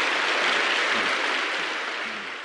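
A large audience applauding steadily, easing off slightly near the end.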